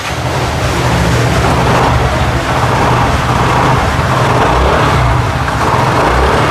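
Yamaha Nouvo 5 scooter's engine running steadily, with a low, even hum and no revving.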